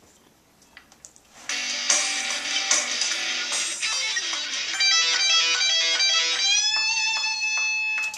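Electric guitar played through an amp. After about a second and a half of faint clicks, a quick run of picked notes starts, and it ends on a note left ringing.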